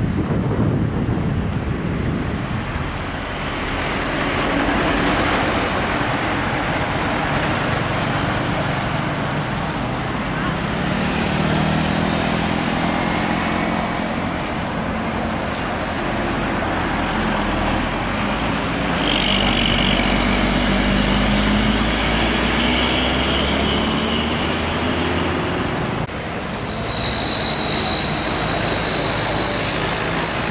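Large intercity coach's diesel engine working as the coach comes up and rounds a bend, over steady tyre and traffic noise. The engine note rises and falls through the middle with a deep rumble. A high steady whine sets in near the end.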